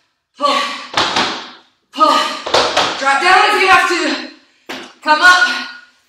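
A woman's voice in five short voiced bursts, with a few sharp knocks among them.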